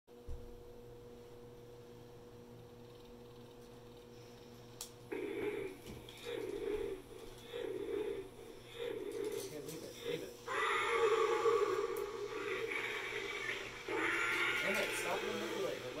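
A battery-powered walking toy T-Rex: a run of short rhythmic sounds about once a second, then a long electronic roar from its speaker, with a second roar near the end.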